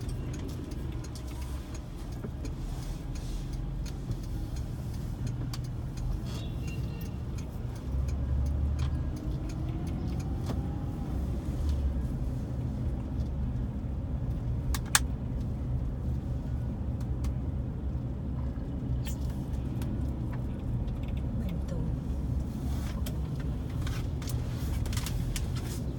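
Steady low rumble of a car driving along a paved town road, engine and tyre noise, with small rattles and one sharp click about midway.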